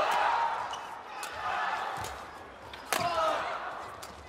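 Badminton rackets striking a shuttlecock in a fast doubles rally: a few sharp cracks, the loudest about three seconds in, over steady arena crowd noise.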